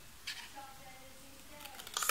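The point of a pair of scissors briefly scraping into a cardboard disc to pierce a hole, a short rasp about a third of a second in.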